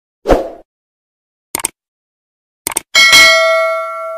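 Sound effects for a subscribe-button animation: a short pop, two brief clicks, then a bell ding about three seconds in that rings on as it slowly fades.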